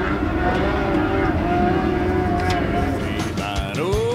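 Lightning sprint car engines droning steadily as the field runs slowly under a yellow flag: a low rumble with a slightly wavering pitch.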